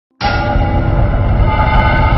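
Channel logo intro sting: a loud, sustained chord of several held tones over a deep rumble, starting suddenly.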